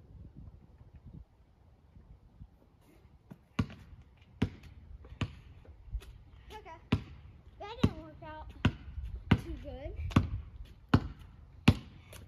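A basketball being dribbled on a paved driveway: steady, sharp bounces a little more than one a second, starting about three and a half seconds in after a quiet stretch.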